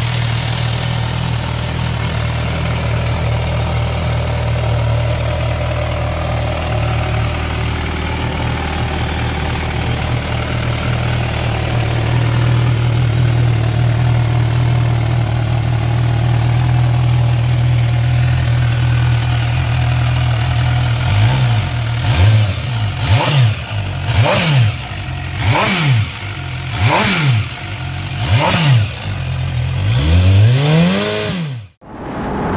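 MV Agusta Brutale 1000RR's 998 cc inline-four idling steadily. About two-thirds of the way in it is revved in a string of quick throttle blips, roughly one a second, each pitch rising and falling back, with a bigger rev near the end.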